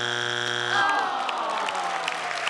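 Game-show strike buzzer: a harsh buzz lasting just under a second, sounding a wrong answer as the three red X's come up. A long falling tone follows, and the studio audience starts clapping.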